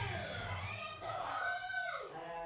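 A cartoon character's high voice from the animated episode, drawn out in long rising and falling glides.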